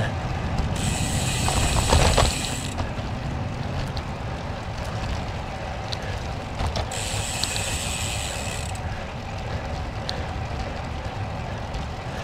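Road bike's rear freehub ticking in a fast ratcheting buzz while the rider coasts, in two spells of about two seconds each: one just after the start and one about seven seconds in. Underneath runs a steady low rumble of wind and tyres on the road.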